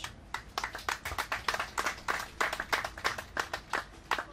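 Applause from a small group of people: separate hand claps heard distinctly, several a second, stopping near the end.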